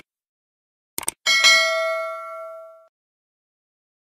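A quick click about a second in, then a single bell ding with several ringing tones that fades away over about a second and a half: a subscribe-button animation's mouse-click and notification-bell sound effects.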